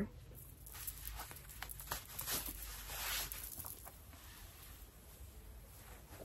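Faint rustling and handling of a satin head scarf as it is untied and pulled off the head, with a few light clicks and a brief swell of rustling about halfway through.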